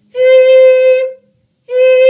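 A woman singing two loud, steady held notes of about a second each, with a short gap between them, on an open vowel sent forward on the exhale. It is a demonstration of a powerful, free chest-voice tone produced without squeezing the throat, called quite powerful and quite good.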